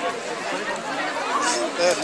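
Voices: people nearby talking and chattering over one another.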